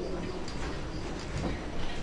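Steady background noise of a room: an even hiss with a low rumble underneath, and no distinct events.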